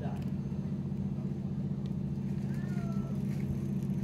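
A steady low engine hum, with a faint short sliding tone about three seconds in.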